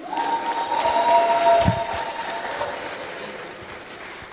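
Applause in an indoor sports hall, swelling about a second in and then fading. A steady held tone sounds over it for roughly the first two and a half seconds.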